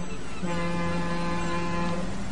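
Ferry's horn sounding one long steady blast, starting about half a second in and lasting about a second and a half.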